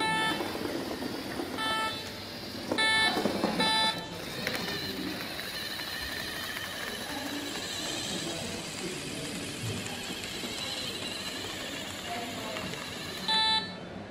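LEGO Mindstorms robot brick giving short electronic beeps, all on the same note: four in the first four seconds and one more near the end. Between the beeps there is a faint steady whir as the tracked robot drives along the line.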